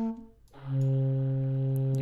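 Recorded flute sample played from a software sampler: one note cuts off just after the start, and about half a second later a lower note begins and holds steady, pitched down by slower playback of the sample near the bottom of its mapped range.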